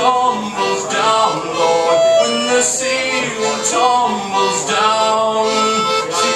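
Concertina playing sustained chords in a slow song, the bellows pushing and pulling so the chords change every second or so.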